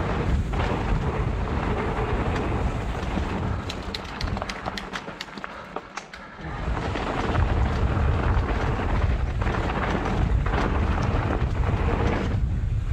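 Wind buffeting the microphone of a ride camera on a mountain bike moving along a trail, with tyre and trail rumble. About four seconds in the rush eases for a couple of seconds and a run of sharp ticks and clicks comes through before it returns.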